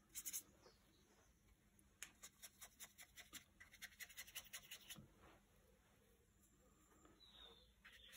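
Faint scratching and light quick taps of a watercolour brush on paper while painting a wash, with a short burst at the very start and a run of soft strokes in the middle.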